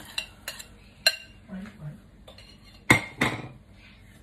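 Clinks and knocks of a ceramic bowl and utensils against a wok as sauce is poured in from the bowl: a sharp ringing clink about a second in and two loud knocks close together near the end.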